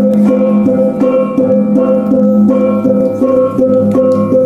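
Balinese gamelan music: metallophones struck in a steady, even rhythm over sustained ringing tones.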